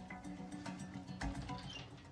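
Quiet background music from the TV drama's soundtrack, with held low notes.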